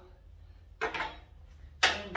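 Tools being handled on a plywood board: a brief rustle about a second in, then one sharp knock near the end as the hammer is taken up from the board.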